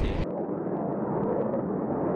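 Steady rushing roar of jet engine noise, starting abruptly as a voice cuts off about a quarter second in.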